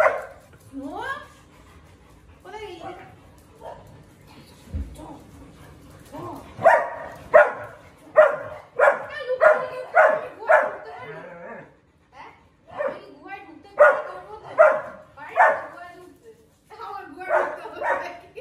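Dogs barking in quick runs of short barks, about eight in a row midway and a few more later, with short rising whine-like calls in the first couple of seconds.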